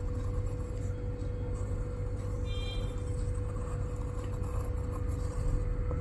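Steady low hum with a faint steady tone above it, under the soft scratch of a pencil going over a small circle drawn on paper.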